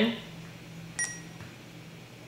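Sapphire infusion pump giving one short beep about a second in as its on-screen OK button is pressed, the pump's confirmation of the key press.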